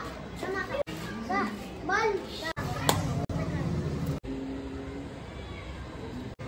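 Children's high-pitched voices calling and chattering, then a low steady rumble in the second half, broken by a few abrupt cuts.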